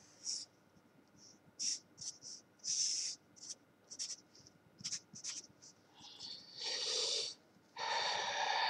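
Felt-tip board marker scratching across paper in a quick series of short strokes as lines and arrows are drawn, ending in a longer stroke near the end.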